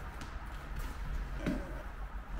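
Handling noise from a camera being set down: a low rumble with soft rustles and faint clicks, and a light knock about one and a half seconds in.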